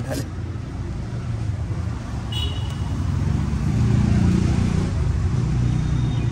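A motor vehicle passing on the road, its engine rumble swelling to its loudest about four seconds in.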